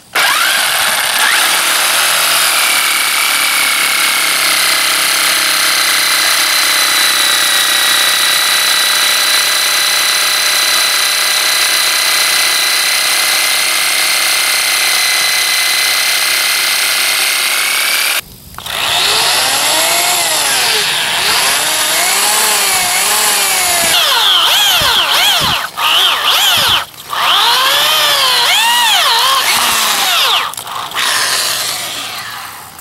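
Jigsaw cutting a sheet of plexiglass, its motor running steadily with a high whine for about eighteen seconds. After a short break, an electric drill bores holes in the plexiglass, its motor repeatedly speeding up and slowing down, with brief stops.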